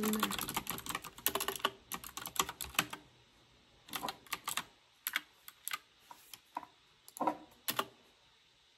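Typing on a computer keyboard: a quick run of keystrokes for about the first three seconds, then scattered single keystrokes with pauses between them.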